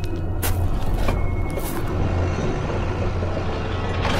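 Low, steady rumbling drone of a dark audio-drama underscore, with a couple of brief hissing swells in the first two seconds.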